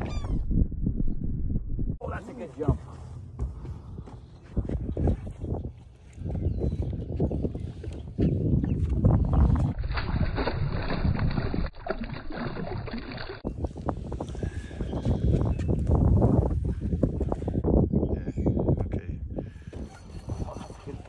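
Wind on the microphone and water sloshing around a boat. Partway through, a hooked largemouth bass thrashes and splashes at the surface.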